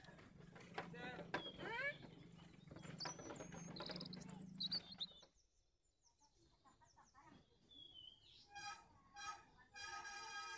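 Outdoor birdsong, with short high chirps and curved calls, over a steady low hum; it cuts off abruptly about halfway through. After a few quiet seconds, sustained musical notes begin near the end.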